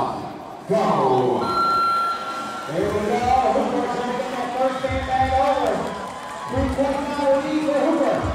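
A man's voice calling out loudly, with long drawn-out words, typical of an arena announcer over a strongman event. A short steady high tone sounds about a second and a half in.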